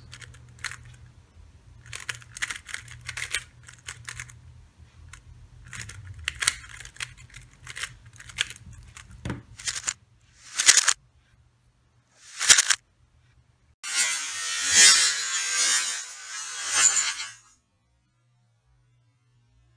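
A plastic 3x3 speedcube being turned by hand: groups of quick clicking layer turns come and go for the first ten seconds. After that there are two short, loud bursts of rushing noise and then a louder rushing noise lasting about three and a half seconds.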